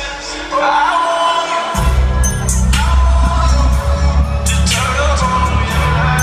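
Live R&B song played over an arena PA and heard from the stands: a man singing, with a heavy bass beat dropping in about two seconds in.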